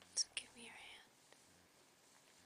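A short soft whisper, a word or two in the first second, beginning with two sharp hissing sounds.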